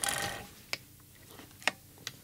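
Two sharp plastic clicks about a second apart from a RadioMaster Boxer radio transmitter being handled, with a few faint ticks between them. The second comes as a finger presses the transmitter's power button.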